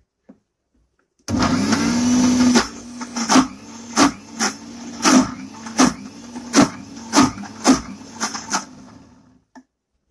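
Electric mixer grinder grinding chutney: the motor starts suddenly and runs loud for about a second, then runs on more quietly with a steady hum and regular knocks from the jar's contents, a little under two a second, before winding down near the end.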